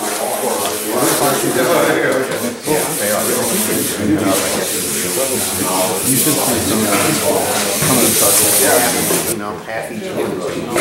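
Hand wet-sanding of a day-old glass fiber reinforced concrete (GFRC) surface with wet-dry sandpaper: a steady rubbing hiss that is strongest near the end and stops just before it, under people talking.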